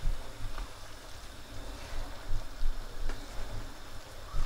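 Wooden spoon stirring chicken and vegetable curry in a wok, the pan simmering with a steady hiss, with irregular low bumps and a couple of light knocks.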